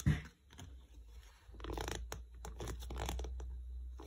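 Light scratching and clicking of a small clear plastic tarantula cup and its lid being handled as the lid is put back on, starting about a second and a half in, over a low rumble of handling on the microphone.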